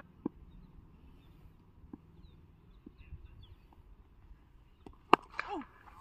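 A cricket bat strikes the ball once, a single sharp crack about five seconds in, followed at once by a short shout. Before the hit there is only faint open-air ambience with a few soft ticks and distant bird chirps.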